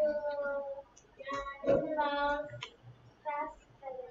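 A child's voice, quieter and farther off than the teacher, in a few short high-pitched phrases with held, sing-song notes.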